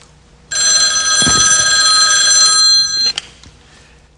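A telephone ringing: one long, steady ring that starts about half a second in and stops about three seconds in, with a click as it ends.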